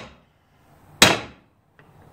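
A hammer gives a single sharp tap, about a second in, on an impact socket resting on a Stihl 028 chainsaw crankcase half. Each tap drives the case half a little further down over the crankshaft bearing and the tight dowel pins to close the crankcase.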